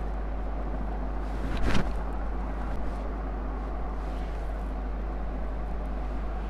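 Steady background noise over a constant low hum, with one brief louder noise about a second and a half in.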